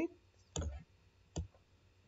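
Two computer mouse clicks, about a second apart.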